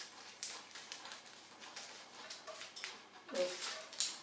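Crackling and rustling of a rolled-up textured placemat being unrolled and flexed open by hand, in a series of small irregular crinkles.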